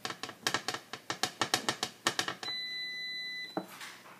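A hand quickly patting a stuffed paratha on a flat tawa, a run of light slaps about five a second. Then a steady electronic beep lasts about a second, followed by a single knock.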